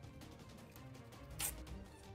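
Panini sticker packet being torn open by hand: one short, sharp crinkling rip about one and a half seconds in, over quiet background music.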